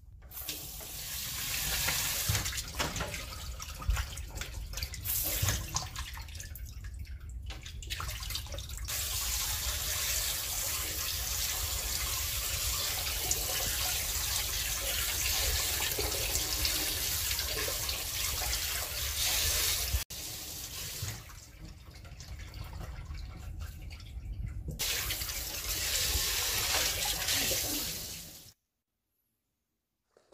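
Kitchen tap running and splashing into a plastic bowl in a stainless-steel sink as grapes and strawberries are rinsed by hand. The flow eases off twice, then stops shortly before the end.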